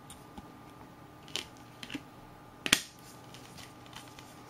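A Blu-ray steelbook case and disc being handled: a few light plastic clicks and taps, with one sharp snap about two and a half seconds in.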